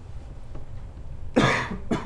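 A man coughs about one and a half seconds in, a short noisy cough with a brief second catch right after it.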